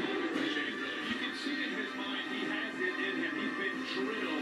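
Television sound of a college football broadcast between plays, with no commentary: steady music in the stadium, heard through the TV's speaker.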